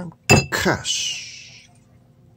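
A drinking glass clinking once in a toast, a sharp tap with a brief ringing tone, followed by a short hiss that fades out.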